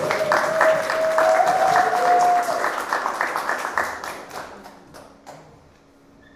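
Audience applause, dense at first, then thinning out and dying away about four to five seconds in. Over the first couple of seconds a single held tone runs through the clapping and steps up slightly in pitch.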